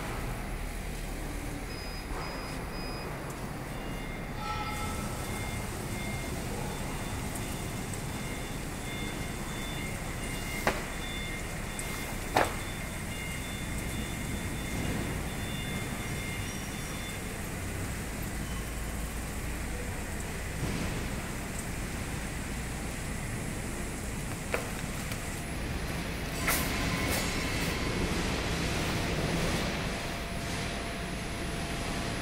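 Laser cutting machine running with a steady low mechanical hum, faint high steady tones coming and going over it. Two sharp clicks near the middle, and the noise gets somewhat louder in the last few seconds.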